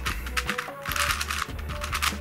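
Plastic clicking and clacking of an MF8 Crazy Unicorn twisty puzzle as its layers are turned by hand, several quick turns in a row, over background music. The new puzzle turns a little stiffly, each move slightly heavier, and is not yet broken in.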